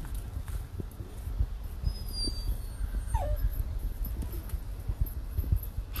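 A puppy whining, with a short falling whimper about three seconds in and a few faint high squeaks just before it, over a steady low rumble.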